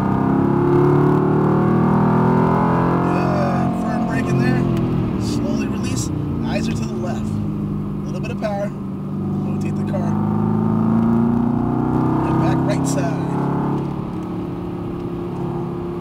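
Mercedes-AMG GT R's twin-turbo V8 heard from inside the cabin at track speed. It pulls with pitch held high, then eases off with the pitch falling about four seconds in, then runs lower before climbing again on the throttle from about eight seconds in.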